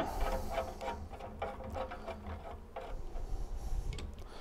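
Faint light clicks and taps of steel studs being handled and threaded by hand into a cast-iron toilet carrier's faceplate.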